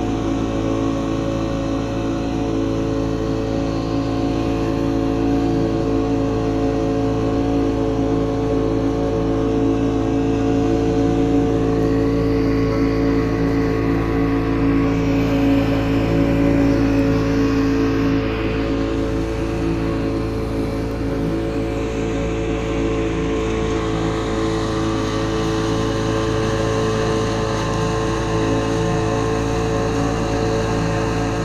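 Two-stroke outboard motor of a small boat running at a steady pitch under way, over the rush of churning water from the wake.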